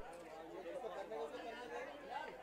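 Overlapping chatter of several people talking at once, no single voice standing out, with one short click right at the start.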